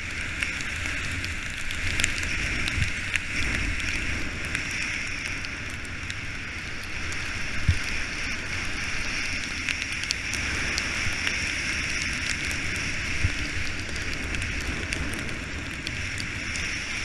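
Skis running over soft, ungroomed snow: a steady hiss with scattered small crackles, over a low rumble.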